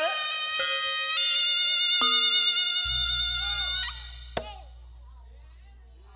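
A Reog Ponorogo slompret (double-reed shawm) playing bright held notes that step between pitches, with a short rising slide at the start, stopping about four seconds in. A single sharp knock follows soon after.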